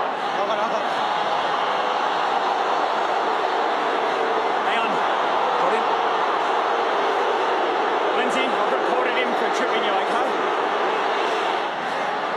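Large football stadium crowd: a steady, continuous wash of many voices at an even level, with a few faint individual calls rising briefly above it.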